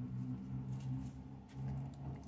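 Steady low hum with a few faint, soft ticks.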